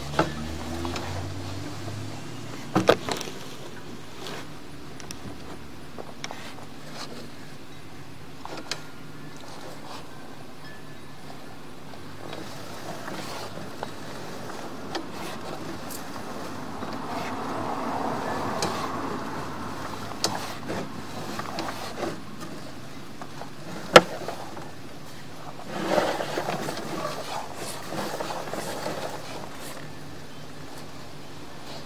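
Sewer-camera push cable being pulled back out of the line by hand: a steady background noise with scattered clicks and knocks, one sharp knock near the end, and two slow swells of noise, one in the middle and one shortly after the knock.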